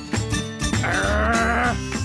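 Cartoon background music, with a quavering, pitched, voice-like sound about a second long in the middle.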